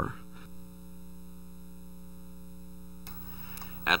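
Steady electrical mains hum under faint tape hiss, with no other sound; the hiss grows slightly about three seconds in.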